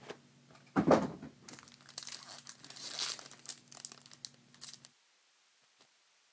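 Foil wrapper of a trading-card pack being torn open and crinkled in gloved hands, loudest about a second in, with the crinkling stopping about five seconds in.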